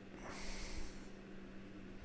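A man's breath, close to the microphone: a soft, airy intake lasting about a second near the start, then a faint steady electrical hum.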